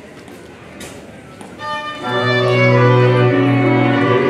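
Moravian cimbalom band with fiddles and double bass starting to play: after a quiet moment, a fiddle enters about a second and a half in and the full band with a deep bass joins half a second later, holding sustained chords.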